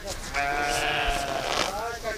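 Sheep bleating: one long, high bleat starting about half a second in, then a shorter one near the end.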